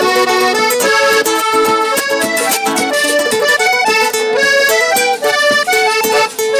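Live Panamanian música típica, instrumental: an accordion plays a quick, running melody over guitar and a steady beat of hand percussion.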